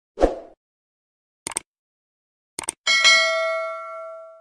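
Subscribe-button animation sound effects: a short soft thud, two quick double clicks about a second apart, then a bell-like notification ding that rings on and slowly fades.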